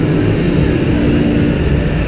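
Loud, steady low rumble and din of an indoor ice rink during play, with a brief low hum about a second in.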